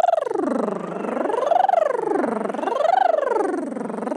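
Singers' vocal warm-up: a trilled rolled R held on a voice and slid slowly up and down in pitch like a siren, rising and falling about three times.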